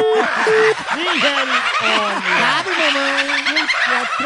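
A telephone busy signal gives a few short, even beeps at the start. Then a flock of poultry, hens and turkeys, squawk and cluck over each other without pause.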